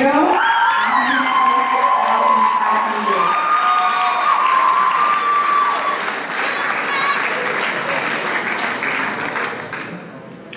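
An audience applauding, with voices whooping and shouting over the clapping for the first several seconds. The applause dies down near the end.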